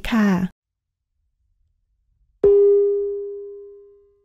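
A single bell-like chime struck about two and a half seconds in, ringing out and fading over about a second and a half.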